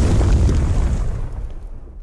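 Explosion sound effect from the Action Movie FX app: the deep rumble of the blast dying away, fading out near the end.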